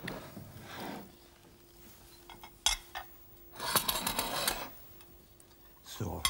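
China plates and cutlery clinking: two sharp clinks about two and a half seconds in, then a second of dish clatter near the four-second mark.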